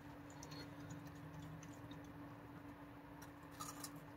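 Faint crunching clicks of a raccoon chewing a cracker, a few soft ones near the start and a small cluster near the end, over a steady low hum.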